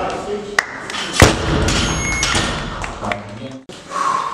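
A loaded barbell with rubber bumper plates dropped from overhead onto a wooden lifting platform. It lands with one heavy thud about a second in.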